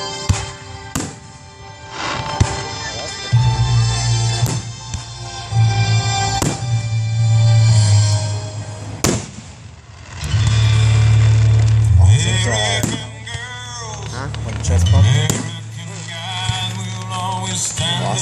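Aerial fireworks shells bursting in a series of sharp bangs, a second or several apart, over loud music. People's voices come in during the second half.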